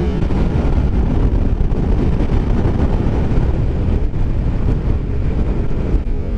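Wind rushing over the onboard camera's microphone at road speed, with a motorcycle engine running steadily underneath; the bike is a Kawasaki ER-5 parallel twin.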